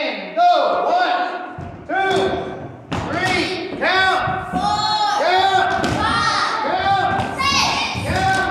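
A group of children shouting in unison, short calls about two a second like a chanted count, with dull thuds of legs and feet on a wooden floor.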